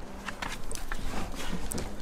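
Car rear seat base being pulled up and handled: scattered small clicks and knocks of the cushion and its plastic fittings, with rustling of the upholstery.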